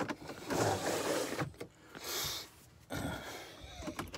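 Rustling and handling noises as a person shifts about in bed holding the phone, with a brief hissing slide about two seconds in.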